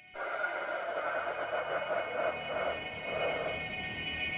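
A hiss like radio static that starts suddenly and stops shortly after the end, with faint steady tones beneath it.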